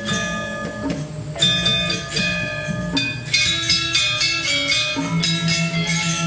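Balinese gamelan ensemble playing: bronze-keyed metallophones struck in quick, ringing runs of notes over sustained low tones, the texture thinning briefly about a second in before filling out again.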